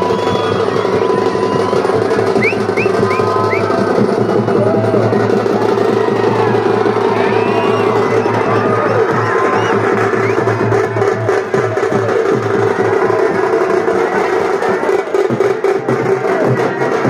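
Loud festival music: fast, dense drumming over a steady held tone, with the voices of a large crowd mixed in.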